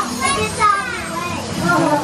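Voices of children and adults talking and calling out in a crowd.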